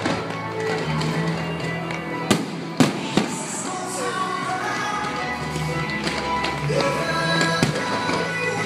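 Fireworks display set to music: a steady musical soundtrack, with the sharp bangs of fireworks bursting. Three bangs come close together about two to three seconds in, and one more near the end.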